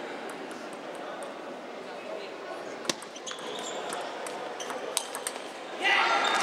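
A few sharp clicks of a table tennis ball striking bats and the table, the loudest about three seconds in, over a low murmur in a hall.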